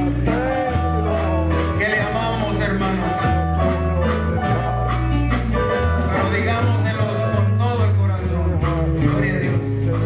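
Live band playing an upbeat praise song, with a drum kit keeping a steady beat under bass and guitar, and male voices singing over it.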